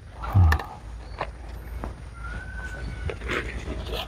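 Caisim (choy sum) plants being cut at the base with a small knife and handled, leaves rustling, with a few sharp snaps of stems. A short grunt-like vocal sound comes near the start, and a faint thin whistle is heard midway.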